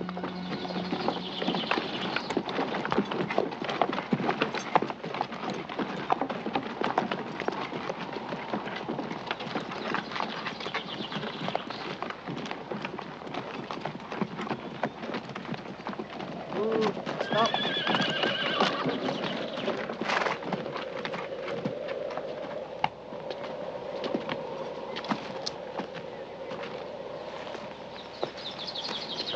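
Horse hooves clip-clopping along with a horse-drawn cart, with a horse whinnying a little over halfway through.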